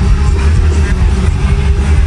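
Punk rock band playing live at full volume, as recorded from within the audience, with a heavy booming low end.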